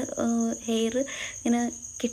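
A woman's voice in short phrases, over a steady, faintly pulsing high-pitched trill like an insect's.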